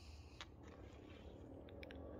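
Near silence: faint steady outdoor background hum, with a few faint short clicks.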